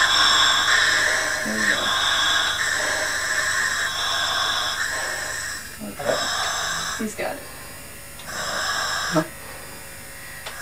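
Long steady hiss of gas in a rebreather's breathing loop at the mouthpiece, which breaks off about six seconds in and returns briefly near the end. Short low grunting breath sounds come in between, from a diver passing out from hypoxia.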